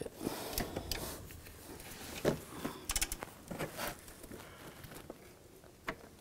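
Hand ratchet with a T40 socket working a bolt loose: scattered clicks and knocks of the tool, with a quick run of ratchet clicks about halfway through.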